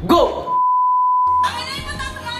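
A steady single-pitch electronic bleep about a second long, of the kind edited in as a censor beep, cutting in after a brief spoken word.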